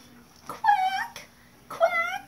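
A woman's voice making two slow, drawn-out imitation duck quacks about a second apart, each falling a little in pitch, voiced sadly as the 'sad mother duck'.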